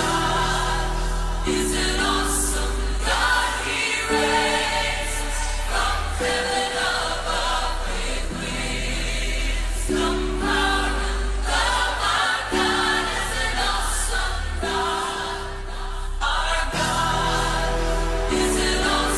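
Choir music in a gospel style, with a steady deep bass under sung chords that change every couple of seconds.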